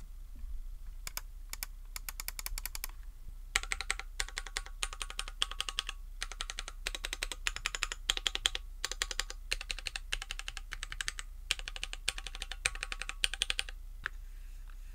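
Typing on a stock Keychron Q1 aluminium-case mechanical keyboard with tactile Gateron Phantom Brown switches, keystrokes coming in quick runs, lighter at first and denser and louder from about three and a half seconds in. The keystrokes carry an echo from the aluminium case, a little bothersome to the typist.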